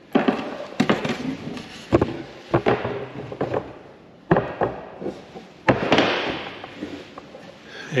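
Plywood parts being handled and knocked into place on a steel-tube airframe: a series of irregular wooden knocks and thunks, several seconds apart, with scraping and handling noise between them.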